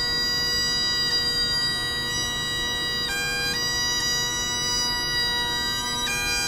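Solo Great Highland bagpipe playing a slow tune of long held notes over its steady drone.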